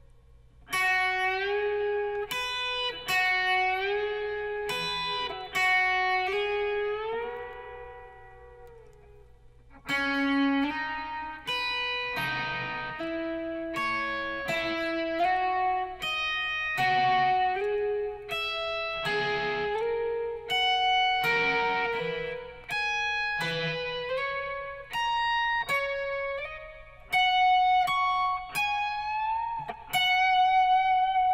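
Electric guitar, a Telecaster-style solid body, playing a country lead solo in single-note lines with slides and string bends. About seven seconds in, one note is left to ring and fade, and the line picks up again around ten seconds.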